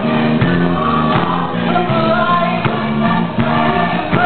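Gospel choir singing a fast song in full voice, held notes over a steady bass line, with handclaps on a regular beat.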